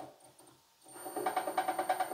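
A short click, then near silence; about a second in, a column drill press comes back in, running at its lowest spindle speed of about 271 rpm on a frequency inverter. It gives a steady motor hum with a thin high whine and a fast, even pulsing.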